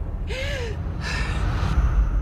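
Trailer sound design over a deep, steady low drone: two short breathy bursts, the first with a brief rise and fall in pitch like a voiced gasp.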